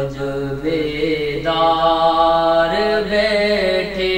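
Devotional Sufi kalam sung in long held notes that step up and down in pitch.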